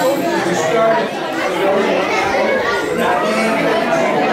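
Many people talking at once, a steady hubbub of overlapping voices with no single clear speaker, echoing in a large gym.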